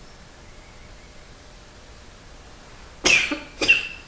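Two coughs in quick succession near the end, over a faint steady hiss of room tone.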